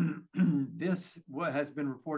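A man speaking: untranscribed speech only.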